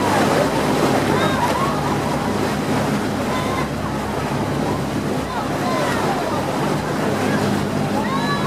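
Boat engine running steadily under the rush of churning wake water, with scattered short calls from people on board in the background.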